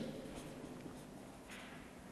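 Felt-tip marker writing on flipchart paper: faint scratching strokes, one a little louder about one and a half seconds in.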